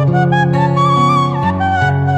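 Background music: a bamboo flute plays a melody with sliding, ornamented notes over sustained low notes, in the style of Sundanese kecapi suling.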